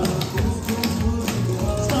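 Clogging taps on the dancer's shoes striking a plywood dance board in quick rhythmic strikes as a double-up step is danced, over recorded dance music.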